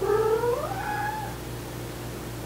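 A domestic cat's single long meow, rising steadily in pitch over about a second and fading out.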